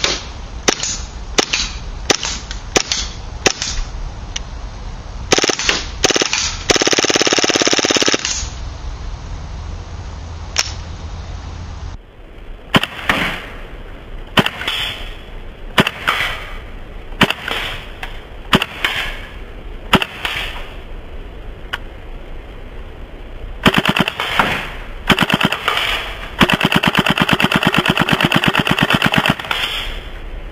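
KWA MP7 gas blowback airsoft submachine gun firing on propane: a string of single semi-automatic shots, each a sharp crack, then a full-auto burst of about a second and a half. After a cut the same pattern repeats, with single shots, a few quick doubles, and a longer full-auto burst of about three seconds near the end.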